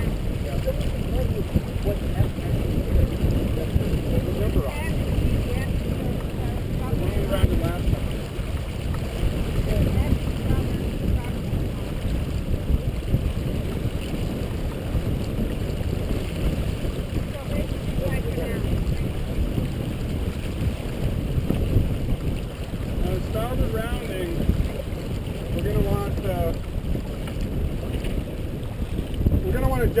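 Steady wind rumble on the microphone and water rushing along the hull of a sailboat under way, with faint voices now and then.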